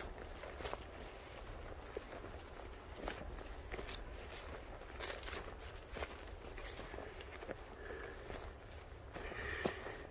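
Footsteps walking over dry grass and pine litter on a forest floor, soft irregular steps about once a second, with a low steady rumble underneath.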